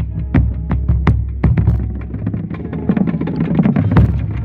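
Marching bass drum struck with a mallet close up, with the snare drums of a drumline playing around it. The strikes come in a steady beat at first and grow denser near the end, where the low pitch of the bass drum stands out.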